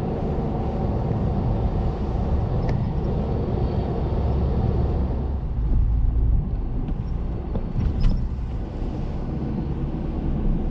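Cabin noise inside a moving car: a steady low rumble of tyres and engine at road speed. A few faint clicks come through, one early and two near the end.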